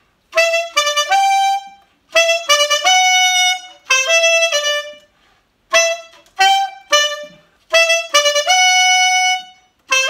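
Solo alto saxophone playing a merengue típico phrase: five short runs of quick notes in a middle register, each about a second long, with brief breaths between them.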